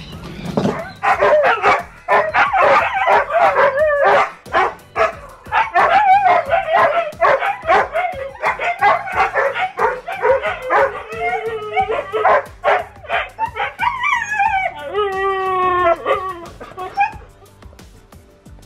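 Siberian huskies howling and yowling in a run of wavering, back-and-forth calls, ending in a few longer falling howls.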